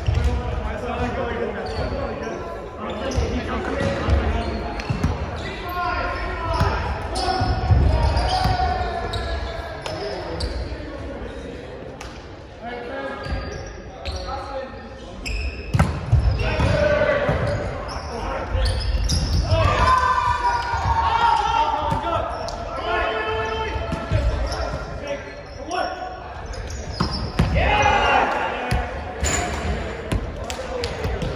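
Volleyball being struck and bouncing in a large gymnasium: sharp slaps that ring in the hall, the loudest about 16 seconds in, mixed with players' voices calling and talking.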